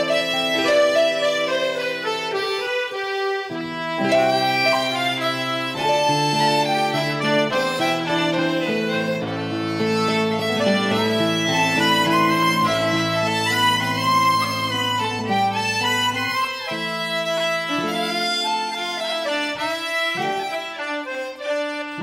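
A tune on concertinas, with fiddle and guitar, playing without a break; the concertinas' reedy notes lead over a steady low accompaniment.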